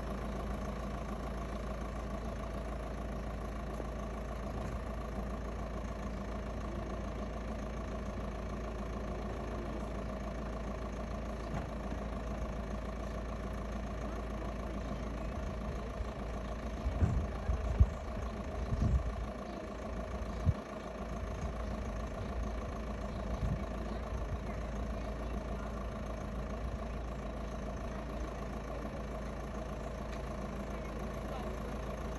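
A folding-hardtop convertible idling steadily while its retractable hard roof folds back into the boot, with a cluster of clunks a little past halfway as the roof panels and boot lid move and lock into place.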